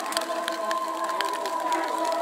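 A steady, held musical tone with overtones starts suddenly and sustains, with scattered sharp clicks over it.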